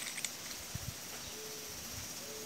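Quiet background hiss with a few faint, low knocks in the first second from hands handling a metal injection-pump part close to the microphone.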